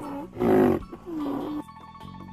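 Background music with sliding melodic tones. About half a second in comes a loud, short, rough animal call.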